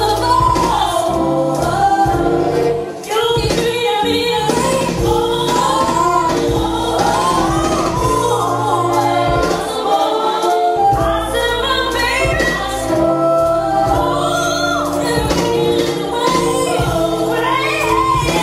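A woman singing a song into a microphone over a backing track with bass.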